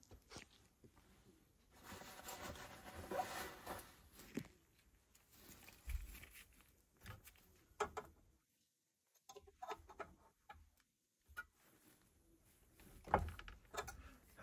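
Quiet handling sounds of gloved hands and a flat steel multi-tool spanner working on gas meter pipe fittings: a stretch of rustling about two seconds in, then scattered small metal clicks and taps.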